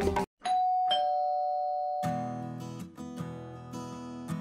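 Two-note ding-dong doorbell chime, a higher note then a lower one half a second later, both ringing out: someone is at the door. Background music drops out just before the chime and comes back about two seconds in.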